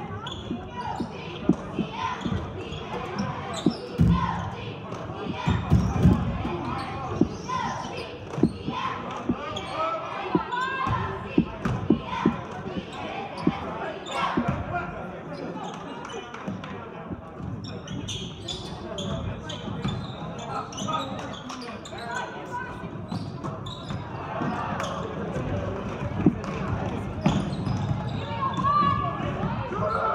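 A basketball dribbled on a hardwood gym floor, giving repeated short thuds, over the voices of players and spectators echoing in a large gym.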